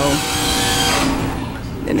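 A person's voice, drawn out in the first second, over a steady low background rumble.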